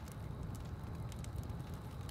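Open fire burning on a bed of coals: scattered sharp crackles and pops over a low, steady rumble.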